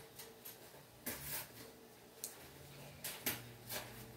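Faint handling sounds of a small paintbrush working over a ceramic figurine: a short scratchy brush stroke just after a second in, then a few light clicks and taps near the end.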